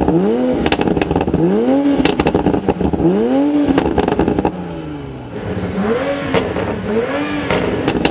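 Engine of a pre-production Toyota Supra (A90) being blipped while standing still, heard close at the exhaust tip: about five quick revs, each rising and falling back, the fourth and fifth smaller. Sharp crackling clicks run between the revs.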